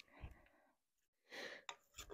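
Near silence, with a faint soft noise about a second and a half in, followed by a light click.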